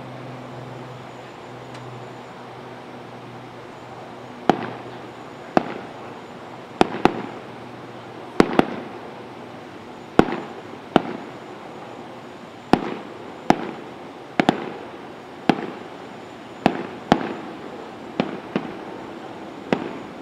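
Fireworks going off: over a dozen sharp bangs at irregular intervals, each with a short echo, starting a few seconds in.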